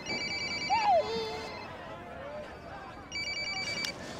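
Mobile phone ringing with an electronic trilling ring, sounding twice: a first ring of about a second and a half, then a shorter second ring near the end.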